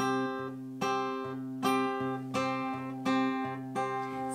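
Taylor acoustic guitar fingerpicked on a G-shape chord with a capo at the fifth fret. The thumb plucks the bass note and the first and second fingers pick the third and second strings, back and forth in a steady repeating pattern with the notes left ringing.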